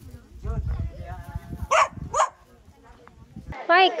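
Two short dog barks about half a second apart, over a low wind rumble on the microphone, followed near the end by a woman starting to speak.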